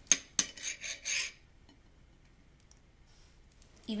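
Kitchen knife cutting cucumber on a ceramic plate, the blade clicking and scraping against the plate several times in the first second and a half.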